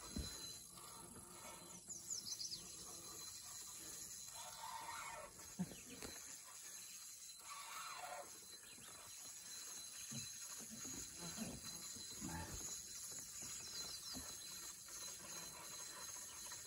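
Faint, steady high chirring of insects, with a few faint, brief sounds over it.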